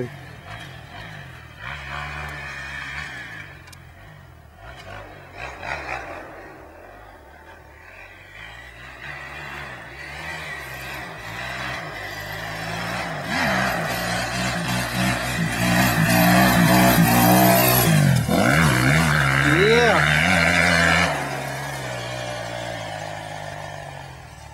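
Single-cylinder four-stroke 250 cc motocross bike engine revving up and down as it rides a dirt trail, getting louder as it approaches and loudest for several seconds in the second half. The sound drops off suddenly about three seconds before the end.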